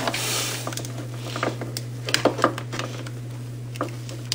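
Light scattered clicks and a brief rustle of hands handling objects, over a steady low hum.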